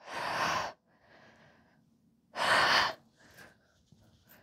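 A woman breathing hard from exertion during glute bridges: a breath right at the start and a louder one about two and a half seconds in, with fainter breaths between.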